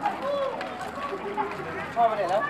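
Overlapping voices of a crowd of people, several talking at once.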